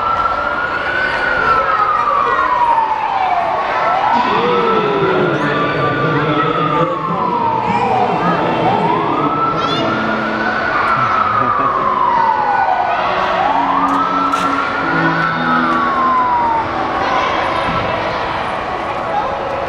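Electronic wail siren of a small electric fire-truck ride, sweeping slowly up and falling back about every four and a half seconds, four times over, and cutting off near the end.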